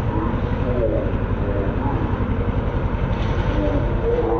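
Petrol rotary push lawn mower engine running steadily under load as it cuts through long, overgrown grass.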